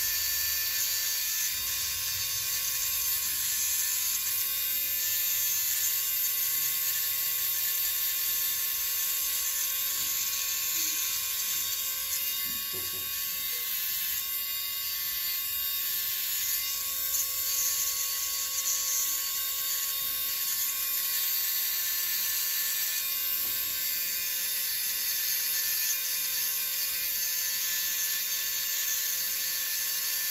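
Podiatry electric nail drill running at a steady speed, its rotary burr grinding down thick toenails infected with fungus, a constant high whine with a gritty scraping.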